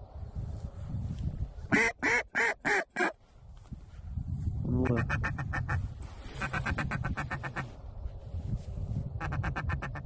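Hand-blown duck call sounding close by: four loud quacks in quick succession, each falling in pitch, then after a pause runs of fast short clucks, about ten a second, calling to ducks circling overhead.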